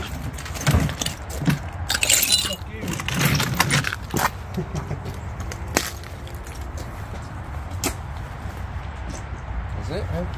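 Plastic toy ride-on tractor knocking and scraping on a gritty concrete path strewn with debris as it is ridden and got off: a run of knocks, crunches and a rasping scrape in the first four seconds, then a few single clicks over a low rumble.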